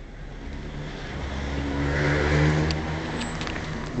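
A car driving by, its engine and road noise swelling to a peak about halfway through, then easing off a little.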